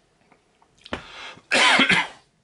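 A man coughing twice: a short cough about a second in, then a louder, longer cough and throat-clearing half a second later.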